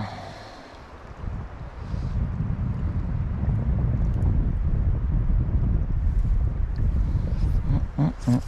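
Wind buffeting the microphone: a low rumble that builds about two seconds in and holds, over the sound of the flowing creek. A brief knock right at the start.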